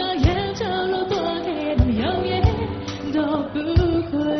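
Live Burmese pop song: a woman singing a gliding melody into a microphone over a band, with a low drum beat thumping four times.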